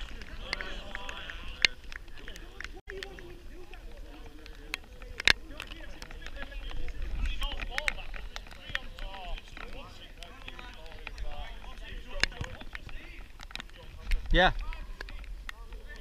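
Five-a-side football in play: players' shouts and calls across the pitch, with sharp kicks of the ball, one near the start, one about five seconds in and one about twelve seconds in.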